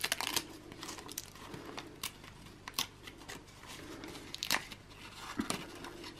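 Paper rustling and crinkling as a thin paper under-eye protective sheet is pulled off its pack, with a handful of short, sharp crackles scattered through it.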